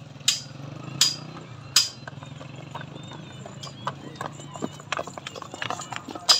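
Horse hooves clopping on hard ground as a decorated horse is walked: three sharp hoof strikes in the first two seconds, then lighter, more frequent clicks.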